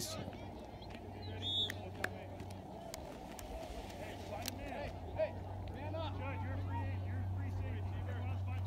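Faint distant voices of players and spectators across an open football field, over a steady low hum, with a few light clicks.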